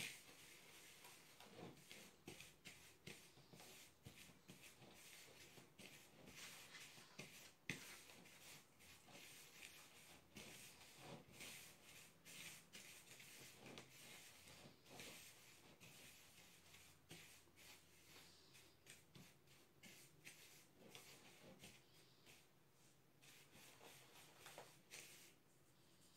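Faint, irregular rustling and scraping of a hand stirring a dry fishing-bait mix of fish-feed meal, breadcrumbs and sugar in a bowl.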